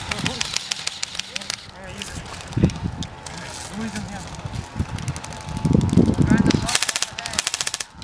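Airsoft guns firing rapid full-auto bursts, a fast stream of clicking shots: one long burst at the start and another near the end, with players' voices in between.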